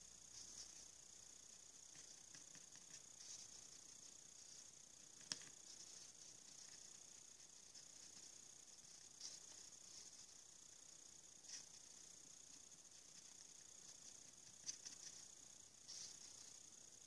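Near silence with a steady faint hiss, broken by a handful of faint, short clicks and taps, the clearest about five seconds in, as a soft paintbrush dabs metallic powder onto a hot-glue bangle held in the fingers.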